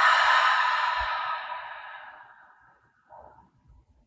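A woman's long, breathy exhale through the mouth, a sigh releasing a breath held at the top of a full inhale. It starts strong and fades out over about two and a half seconds.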